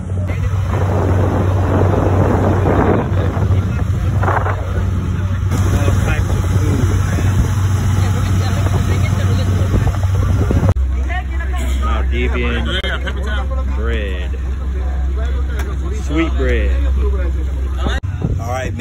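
Motorboat engine running steadily under way, a low drone with wind and rushing water over it; the hum shifts lower about ten seconds in. Voices talk in the background, mostly in the second half.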